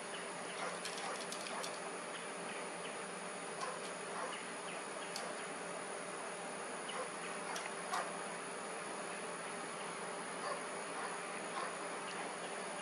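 Steady outdoor insect buzz with a few faint small ticks scattered through it; the hawk itself is silent.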